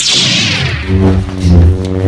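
Lightsaber sound effect: a loud swing whoosh that sweeps down in pitch, followed by a low, steady electric hum.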